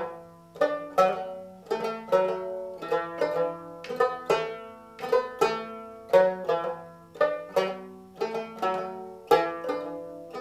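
Tibetan dramyen, a fretless long-necked lute, plucked in a repeating rhythmic figure of about three strokes a second, each note ringing out and fading before the next. It is played alone, with no singing.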